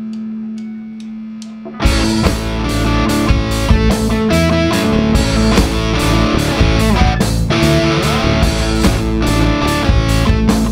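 Live rock band starting a song: one held electric guitar note with four faint ticks under it, then about two seconds in the full band comes in loud with distorted electric guitar, bass and a steady drum beat.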